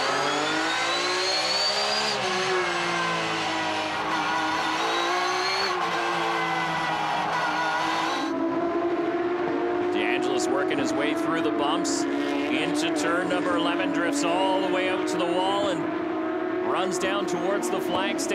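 Porsche 911 GT3 Cup race car's flat-six engine heard from on board, its note climbing and falling as the driver accelerates, shifts and lifts. About eight seconds in the sound cuts to trackside, where an engine note holds and climbs slowly, with scattered clicks.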